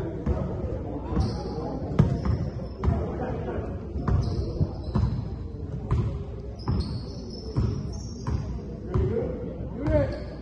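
Basketball being dribbled on a hardwood gym floor, a bounce about once a second, with short high sneaker squeaks on the court and players' voices in the large gym.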